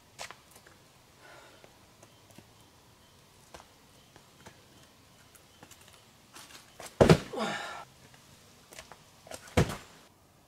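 A climber's effort grunt about seven seconds in, one strained vocal sound falling in pitch and lasting under a second, among light scuffs and taps of climbing shoes and hands on granite. A sharp thud near the end, as the climber comes off the boulder onto the ground.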